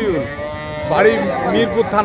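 A cow moos once, a long drawn-out call in the first second, and a man's voice follows.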